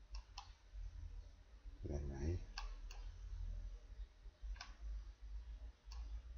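Computer mouse clicking, about five single clicks spread out, over a low steady rumble. A short vocal sound comes about two seconds in.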